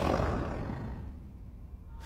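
A low, noisy rumble that fades away over about a second and a half.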